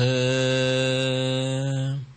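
Buddhist monk chanting a Pali verse in a male voice, holding one long steady note on a single pitch that stops at the end.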